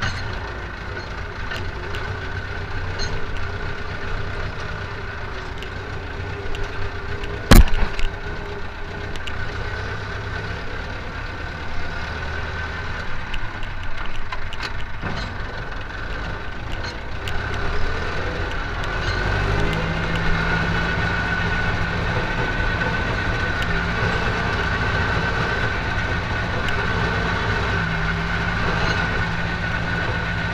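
Ursus tractor's diesel engine running steadily, heard from inside the cab, with a steady whine and small rattles over it. A single sharp knock about seven and a half seconds in is the loudest sound. About twenty seconds in the engine note shifts and grows a little louder.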